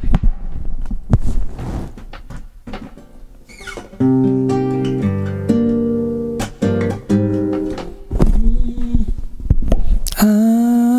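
A few knocks and handling thumps, then from about four seconds in, chords strummed on a nylon-string classical guitar, changing every half second to a second.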